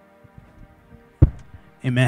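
Handheld microphone being picked up: one sharp, low thump of handling noise about a second in, over faint sustained keyboard tones. A man's voice starts just before the end.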